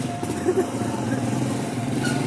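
A vehicle engine running at a steady pitch.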